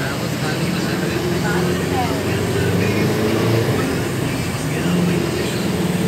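Engine drone and road noise heard from inside a moving vehicle, a steady low hum throughout.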